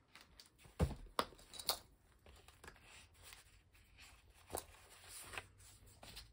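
Paper sheets and plastic binder sleeves being handled and leafed through: a faint rustle with a few sharp clicks and taps, the loudest about a second in.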